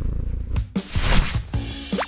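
A domestic cat purring over background music.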